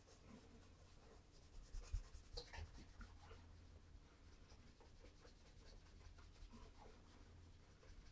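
Faint rubbing of a cloth over a leather Oxford shoe's upper, with a few soft knocks about two seconds in.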